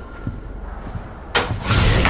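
Film soundtrack: slow, heavy footfalls thud faintly, then about a second and a half in a sudden loud rushing noise with a deep rumble bursts in and swells.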